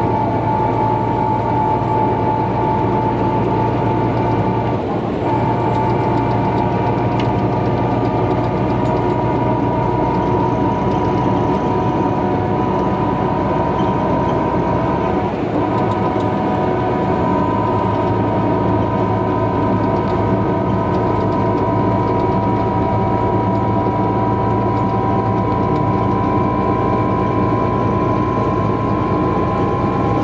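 Inside a 2017 MCI J4500 coach cruising at highway speed: the steady drone of its Detroit Diesel DD13 inline-six diesel and Allison B500 automatic transmission, with road noise and a high whine that climbs slowly in pitch as the coach gains speed. The sound dips briefly twice, about five and fifteen seconds in.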